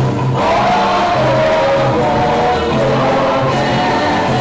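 A group of voices singing a gospel song together over instrumental backing with a steady low bass line.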